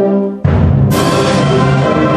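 Concert band playing: a held brass chord breaks off, and about half a second in the full band comes in loud, with a bright crash about a second in that rings on.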